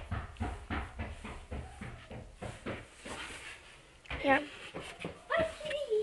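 Soft rustling and scattered light clicks with a low rumble underneath, from a hand tickling baby kittens in their bedding close to the microphone.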